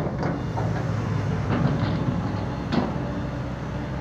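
Caterpillar hydraulic excavator's diesel engine running steadily under load as the machine swings and lowers its loaded bucket, with a few sharp clanks.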